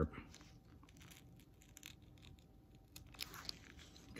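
Faint scratching and small tearing sounds of a sharp X-Acto knife blade slicing through a canvas panel's padded fabric seal, with a short cluster of crackles about three seconds in.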